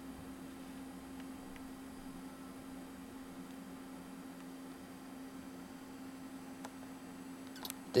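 Faint steady low hum of desktop computers running, with a few faint ticks, while an iMac G4 is still slowly booting.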